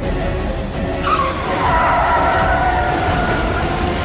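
Car tyres screeching in a hard braking skid: a loud squeal starts about a second in and slides down in pitch for over two seconds, over a low engine rumble.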